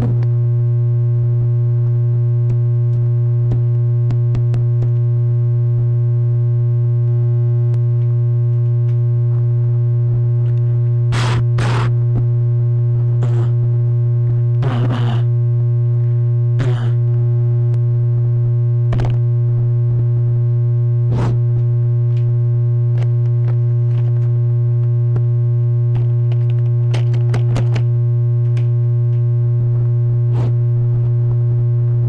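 Experimental electronic music: a loud, steady low drone tone with fainter higher overtones held throughout, broken by irregular short crackles and bursts of noise, mostly in the middle and again near the end.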